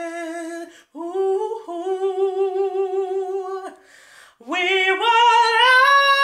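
A woman singing a cappella without words: held notes with vibrato, with a short break about a second in. A quick breath comes around four seconds, then a louder note that climbs in pitch near the end.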